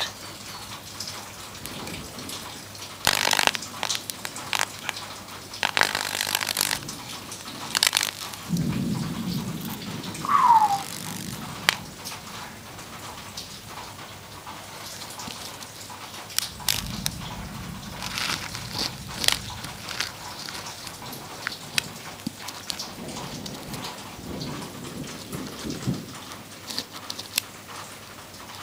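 High-current electric arc burning on a graphite pencil lead clamped between jumper-lead clamps, crackling and sizzling irregularly with several louder bursts as the lead burns away and breaks down in the air. A short falling squeal comes near the middle.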